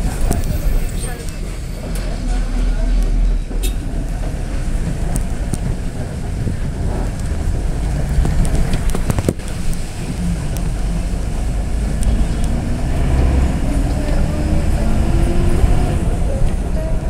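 A road vehicle driving along, its engine running under heavy wind rumble on the microphone; the engine pitch rises near the end.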